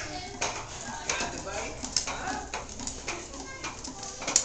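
Hard plastic tricycle wheels rolling over a tile floor, clattering and clicking irregularly as a toddler pedals.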